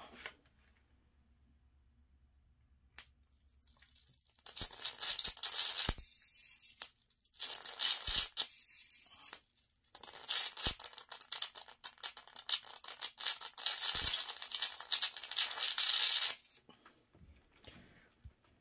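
High-voltage arc crackling between an alligator clip and a wire, fed by a homemade 12-volt, MOSFET-driven supply putting out about 50,000 volts. It is a loud, dense crackle with a steady high-pitched whine. It starts about three seconds in, breaks off twice for a moment, and stops a second or two before the end.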